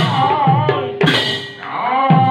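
Manipuri devotional song: a man's singing voice with strokes on a pung barrel drum and a single clash of large hand cymbals about a second in.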